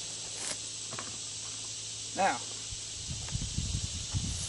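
Steady outdoor background hiss, with a low rumbling rustle in about the last second.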